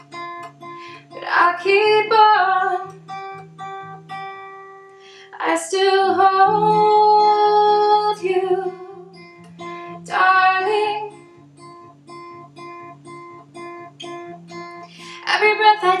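Acoustic guitar picking a steady, repeating pattern of notes, with a woman singing over it in a few phrases, holding one long note about six seconds in.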